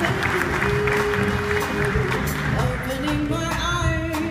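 Live jazz trio of double bass, piano and drums playing, with a woman's voice singing.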